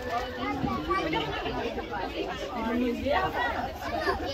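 Chatter of several voices talking at once, children's and adults', with no single speaker standing out.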